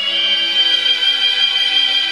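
Competition music for an ice dance free dance played over the rink's sound system: a slow, sustained melody holding a long high note.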